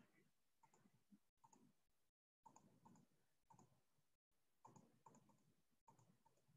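Faint computer mouse clicks, about two a second and often in pairs, as the pointer clicks down a scrolling list on screen.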